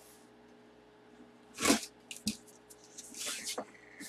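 Cardboard box being cut open with a box cutter. There is a sharp knock a little under two seconds in, then a few small clicks, then a short scraping slice through the tape and cardboard a little after three seconds.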